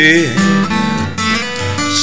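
Country song accompaniment: acoustic guitar picked and strummed in a short break between sung lines, with the tail of a held sung note at the very start.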